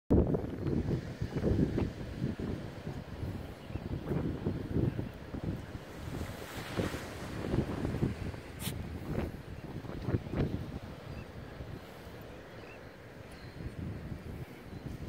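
Wind buffeting the microphone in irregular gusts, loudest at the start and easing toward the end, with a few brief snaps after the middle.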